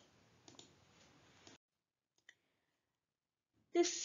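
Near silence with a faint computer mouse click about half a second in and a tiny second tick just after two seconds, as the lecture slide is advanced.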